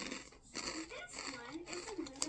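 Mouth-closed chewing of a crunchy rolled corn tortilla chip, a few faint crunches, under a faint wavering voice or hum.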